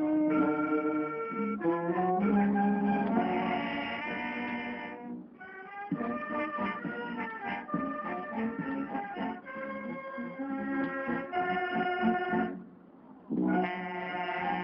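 Mexican wind band (banda filarmónica) of brass and woodwinds playing a waltz, in phrases of held notes; the band pauses briefly near the end before coming back in.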